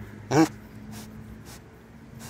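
Pot-bellied pig giving one short grunt about half a second in, followed by faint quiet sounds.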